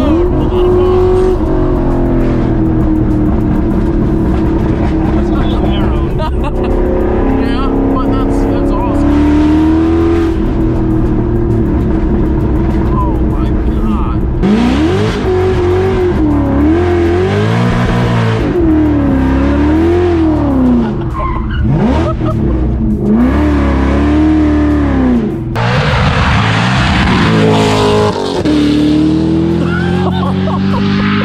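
Ford GT's Whipple-supercharged V8 running hard under the driver, its pitch climbing and falling with throttle and gear changes, heard inside the cabin. Near the end the sound changes to the car heard from the roadside as it drives away.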